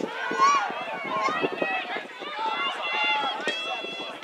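Many high voices shouting and calling over one another at once, with no clear words, from people at a girls' lacrosse game in play.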